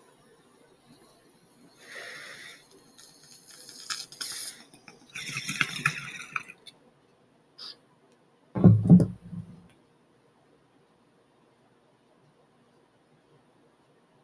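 Glass bong bubbling and hissing in a few pulls as smoke is drawn through its water, then a brief click. A little past the middle comes a loud low thump as the bong is set down on the wooden desk.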